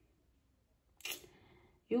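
Near silence, broken about a second in by a short click with a faint trailing noise. A woman's voice starts right at the end.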